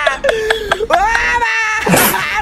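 A man wailing in exaggerated mock crying: long, drawn-out cries that slide up and down in pitch, breaking off briefly about a second and a half in.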